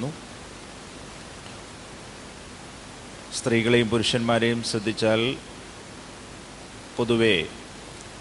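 A man's voice speaking into a microphone: a phrase of about two seconds in the middle and a short one near the end, with a steady hiss underneath.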